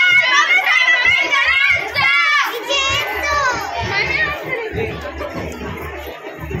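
High-pitched voices of children and women calling out over crowd chatter as a procession walks past. The calls are loudest in the first few seconds and give way to a lower general hubbub.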